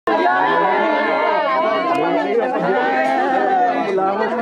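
Crowd chatter: many people talking and calling out at once, their voices overlapping without a break.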